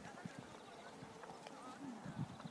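Faint, soft hoofbeats of a horse cantering on the sand footing of an arena.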